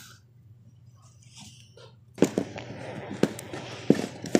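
Near silence, then about two seconds in a sudden crack of thunder breaks in and goes on as a crackling rumble with sharp cracks through it.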